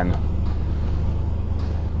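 1993 Ford Explorer's 4.0-litre V6 idling steadily just after being started, heard from inside the cabin; a fruity sound.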